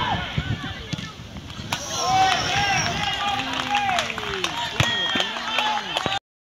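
Shouted calls from players and onlookers on a football pitch: short, scattered voices over outdoor noise, with a few sharp knocks.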